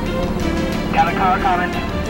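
Background music with steady held tones, with a voice speaking a few words about a second in.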